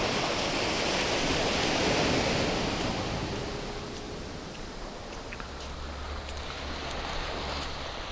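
Small waves washing up on a sandy shore, with wind on the microphone. The surf is loudest in the first few seconds and then eases off.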